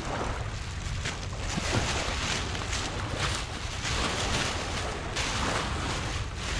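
Black plastic garbage bag crinkling and rustling in bursts as it is gathered up by hand, over steady wind noise on the microphone.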